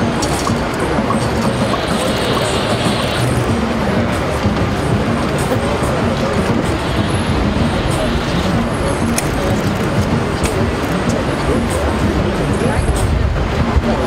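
Crowd of onlookers talking all at once over city traffic noise, a steady dense babble of voices.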